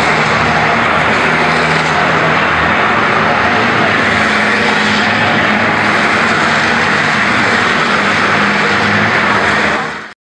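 Diesel engines of Tata Prima race trucks running hard as a group of trucks races round a circuit: a loud, steady engine din whose engine notes shift up and down as the trucks accelerate and pass.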